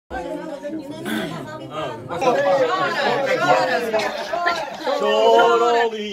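Several men's voices talking over one another in a room: lively group chatter.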